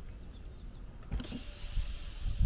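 Car's electric power window motor running faintly, starting about a second in, as the side window begins to lower.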